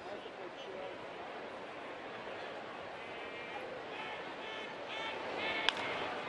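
Steady ballpark crowd murmur with a few raised voices from the stands, then a single sharp crack of a bat hitting the ball hard for a foul, near the end.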